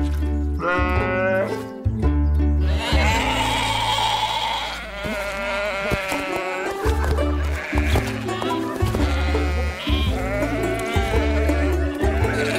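Background cartoon music with a low bass line, over cartoon sheep bleating, at times several together.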